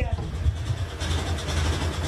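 Motorcycle engine running at idle, its low rumble coming in suddenly at the start.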